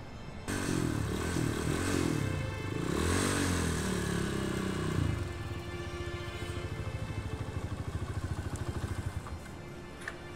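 Dirt bike engine rising and falling in pitch as it is ridden in and throttled, then settling to a throbbing idle that stops about nine seconds in.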